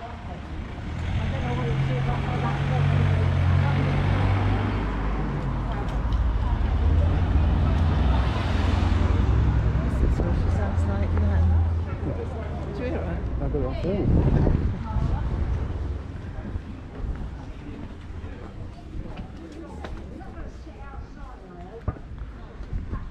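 A motor vehicle running in the street: a low engine drone that swells as it passes about eight seconds in, then fades out about twelve seconds in, leaving quieter street background.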